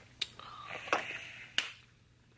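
Three short sharp clicks or snaps, about two-thirds of a second apart, with a faint voice between them.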